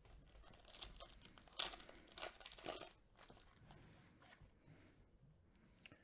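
Foil trading-card pack wrapper crinkling and tearing as it is opened by gloved hands, faint, in a few short bursts over the first three seconds, then dying away.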